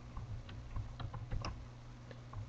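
Computer keyboard keys tapped in a quick, uneven run as a shell command is typed, the taps thinning out near the end.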